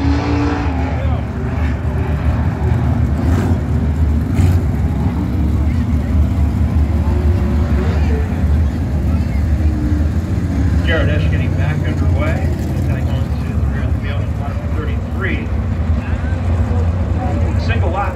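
Field of 410 sprint cars' V8 engines running around the dirt oval, a loud steady low drone whose pitch rises and falls as the cars go by. Voices in the stands rise over it about eleven seconds in and near the end.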